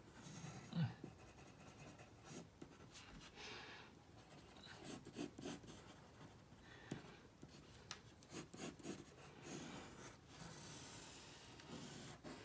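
Faint scratching of a pencil drawing on a sheet of paper, in short, irregular strokes with a few slightly louder ones.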